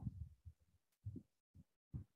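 Near silence with a few faint, soft low thumps spread through the second half.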